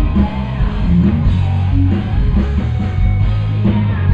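Hard rock band playing live, heard from the crowd: distorted electric guitars and bass over drums, with a singer's voice.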